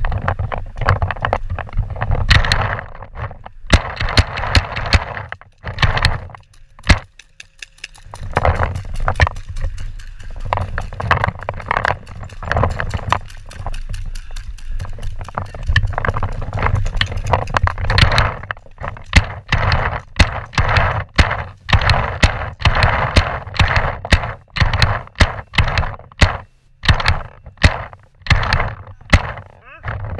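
Paintball markers firing and paintballs hitting bunkers: many sharp pops and cracks, some single and many in quick runs.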